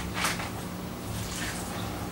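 Quiet hand handling of stuffed sausage casing as it is twisted into a link: a couple of brief soft hisses near the start and a fainter one later, over a low steady hum.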